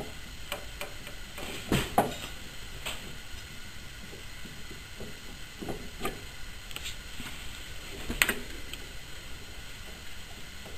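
Scattered light clicks and knocks of a grease-packed half CV joint cup being handled and turned by hand on an engine's drive end, with the loudest knocks about two seconds in and just past eight seconds.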